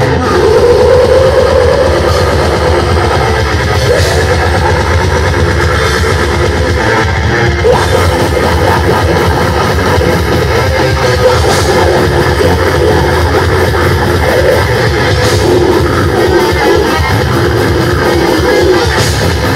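Heavy metal band playing live and loud: distorted electric guitars, bass and drum kit, with a vocalist screaming into the microphone.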